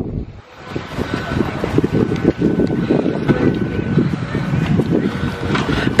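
Wind buffeting the camera microphone: a loud, irregular low rumble that sets in after a brief dip at the start and keeps on without pause.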